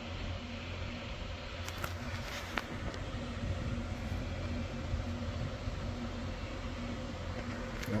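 Steady low buzzing hum of background noise, with a faint pulse about twice a second and a couple of faint clicks.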